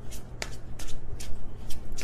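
A deck of tarot cards being shuffled by hand: a run of quick card slaps and flicks, about three or four a second.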